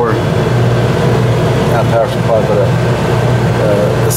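Steady low hum of a paint room's exhaust and intake ventilation fans running.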